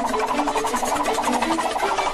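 Green bamboo stalks creaking under strain as they are bent back: a fast, even rattle of clicks, with a film score's low notes underneath.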